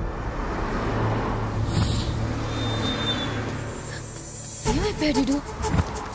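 Low, steady rumble of city street traffic, with a vehicle passing about a second and a half in. A person's voice cuts in near the end.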